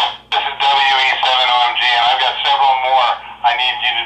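A voice coming in over a Baofeng handheld radio's speaker, thin and band-limited like a received radio transmission, running almost without a break.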